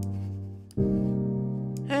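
Software piano chords auditioned in the Scaler 2 plugin: a held chord dies away, then a new chord is struck about three-quarters of a second in and rings steadily.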